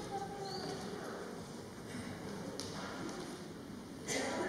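Quiet hall room tone with a few faint small clicks and soft voices, in the hush before a wind band starts playing.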